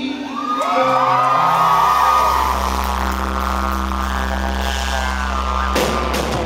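Live band playing amplified music, holding a long sustained chord over a deep bass note that comes in about a second in. It sounds fuzzy, recorded right in front of the PA speakers.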